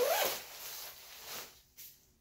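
Jacket's front zipper being unzipped in one pull, loudest in the first half second, followed by softer rustling of the nylon shell as the jacket is opened.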